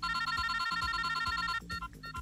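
Mobile phone ringing with a fast electronic trilling ringtone that starts suddenly, loud for about a second and a half, then carries on as softer, spaced beeps.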